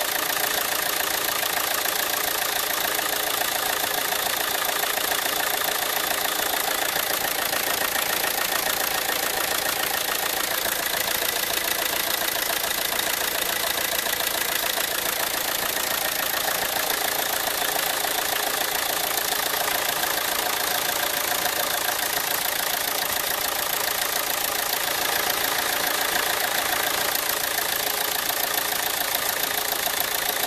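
Volvo V50's 2.0-litre four-cylinder turbodiesel idling steadily, heard close up in the open engine bay. It has just been started after a fuel filter change and is running to clear air bubbles still in the fuel system.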